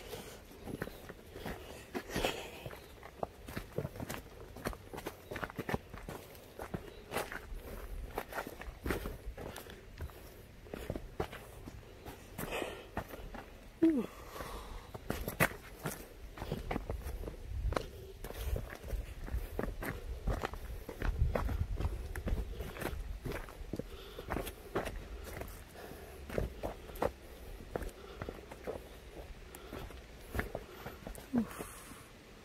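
Footsteps of a person walking down a dirt trail and its timber steps, a steady run of short scuffs and thuds.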